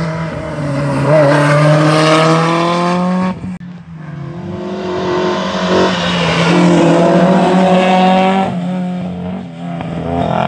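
Historic rally cars' engines accelerating hard, the engine note climbing steadily in pitch; after a brief break about three and a half seconds in, a second car's engine climbs again and falls away near the end.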